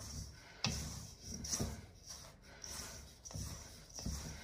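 A spatula stirring and scraping a dry, crumbly flour, margarine and sugar mixture around a stainless steel mixing bowl, in several soft, irregular strokes.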